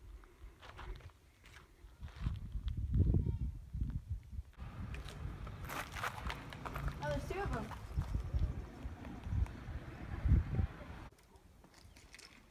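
Footsteps scuffing and crunching on loose rock and gravel on a hiking trail, with wind buffeting the microphone in low gusts. Faint voices come through in the middle.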